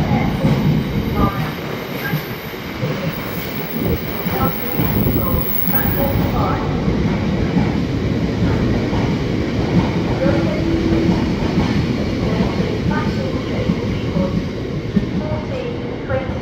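Freight train of bogie cement tank wagons rolling steadily past, wheels rumbling and clicking over the rail joints.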